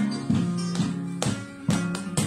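Flamenco acoustic guitar playing a soleá, with sharp hand claps (palmas) marking the beat about every half second.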